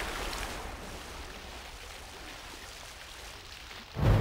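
Water splashing and spraying onto a flooded floor, settling into a steady hiss of falling water that slowly dies down.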